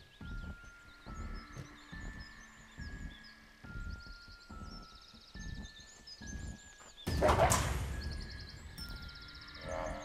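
Film score: a low beat pulsing about every second under held tones, with birds chirping in the background. A sudden loud hit about seven seconds in fades over about a second.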